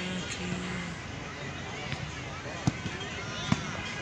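Two sharp thuds of a football being struck, under a second apart, about two-thirds of the way in, over distant shouting players.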